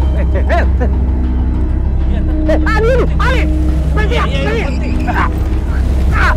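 Motor scooter engine running with a steady low rumble, while a man gives short, rising-and-falling cries over it several times.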